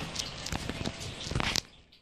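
Handling noise from a phone camera being carried and moved: rustling with irregular clicks, knocks and footsteps, cutting off suddenly near the end.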